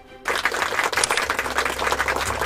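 Soft background music, then about a quarter second in a sudden loud burst of applause, dense irregular clapping that runs on over the music.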